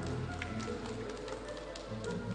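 Orchestral program music over the rink's speakers in a quieter passage, with the short scrapes and taps of figure skate blades on the ice.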